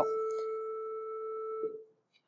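A steady pitched tone with fainter overtones that fades out near the end.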